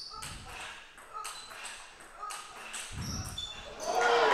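Table tennis rally: the celluloid-type ball clicking off bats and table about twice a second, each hit with a short ping. Near the end crowd applause swells up as the point ends.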